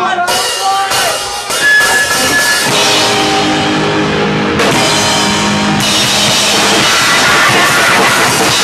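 A powerviolence band playing live on drum kit and guitar. It opens with a few separate drum hits, and the full band is playing loud and dense from about three seconds in.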